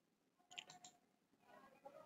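Near silence with a few faint clicks about half a second in, from a computer mouse.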